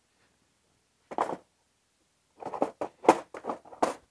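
Hard plastic organizer bin knocking against the plastic shell of a Milwaukee Packout toolbox as it is fitted into place. There is one knock about a second in, then a quick run of sharp clacks near the end, the loudest about three seconds in.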